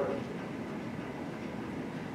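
A pause in speech: only the steady background noise of the room, an even hiss and rumble with no distinct events.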